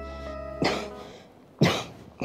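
A person coughing twice, about a second apart, the second cough louder, over soft background music that fades out about halfway through.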